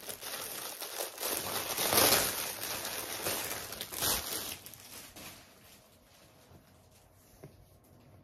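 Clear plastic poly bag crinkling as it is handled and the shorts are pulled out of it. The crinkling is loudest about two seconds in and dies away about five to six seconds in.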